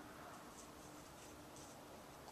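Near silence: a faint steady hiss with a few soft, brief scratchy rustles.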